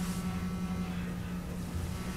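Room tone: a steady low electrical hum with faint hiss, and no other events.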